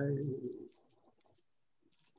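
A man's voice holding and drawing out the end of a word ("allora"), trailing off within the first second, then near silence.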